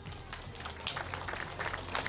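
Scattered clapping from an outdoor crowd, a dense patter of short claps that grows a little louder after the first second.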